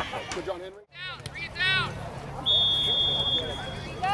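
Referee's whistle blown once, a steady high tone lasting about a second, over the shouting voices of spectators and players.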